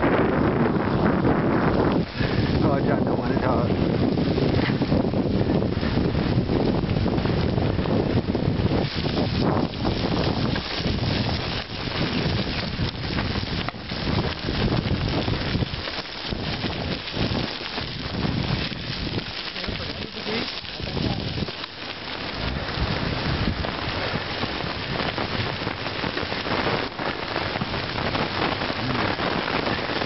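Bicycle tyres rolling over a gravel trail, a steady noisy rush mixed with wind on the microphone, easing for a few seconds past the middle.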